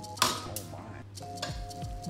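Pasta server knocking against a pot while spaghetti is tossed: one sharp clink about a quarter second in, then a few lighter knocks in the second half.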